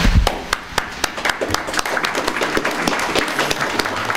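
A room of people applauding, many hands clapping irregularly, with a low thump at the very start.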